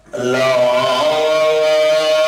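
A man's voice chanting in long, held melodic notes into a microphone, starting just after a short pause.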